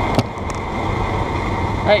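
Campagna T-Rex three-wheeler's engine running, heard from its open cockpit as a steady rumble mixed with road noise, with a single sharp click just after the start.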